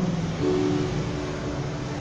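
Electronic keyboard holding a sustained chord, which changes to a new chord about half a second in.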